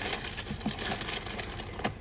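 Rain pattering on a pickup truck's roof and windows, heard inside the cab as a steady hiss of many quick, irregular ticks.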